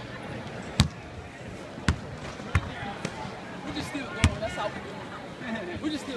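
A basketball bouncing on a hardwood court: four sharp thuds at uneven intervals, about one, two, two and a half and four seconds in, over a background of people's voices.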